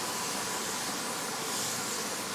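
Aerosol facial mist spray can hissing in one long steady spray onto the face.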